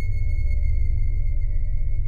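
A steady electronic hum: a deep low rumble with a constant high-pitched whine over it.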